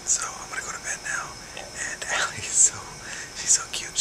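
A man whispering close to the microphone: a stream of breathy, unvoiced words with sharp 's' sounds.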